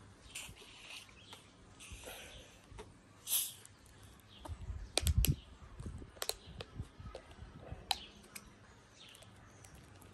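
Plastic screw-cap bottle of carbonated soft drink being opened: short hisses of escaping gas as the cap is twisted, the strongest about three seconds in, then a run of sharp clicks and low knocks from handling the cap and bottle.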